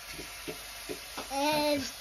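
Minced meat and onions sizzling quietly in a pot on the stove, with faint small crackles. Near the end a voice draws out a short held vowel.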